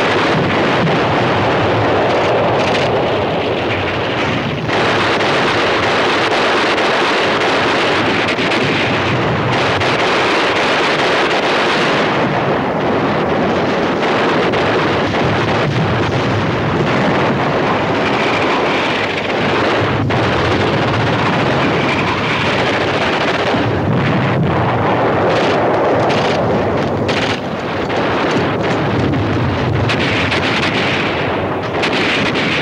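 Battle noise: a continuous loud rumble of explosions and gunfire, with a few sharp cracks standing out.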